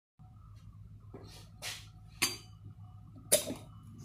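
A few sharp knocks and clatters, the loudest about three seconds in, as a beer glass is handled at a tap tower, over a steady low hum.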